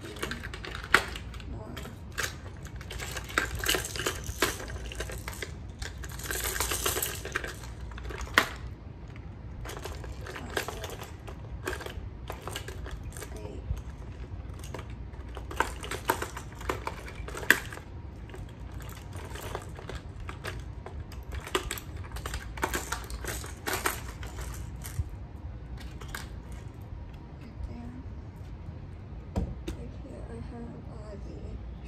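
Hard plastic fishing lures clicking and clattering as they are handled and set into the plastic compartments of a tackle box tray: irregular runs of small clicks, with a couple of sharper clacks about a second in and a little past halfway.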